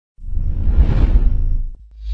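A deep whoosh sound effect with a heavy low rumble under it, for an animated logo reveal. It comes in about a fifth of a second in and dies away just before the end.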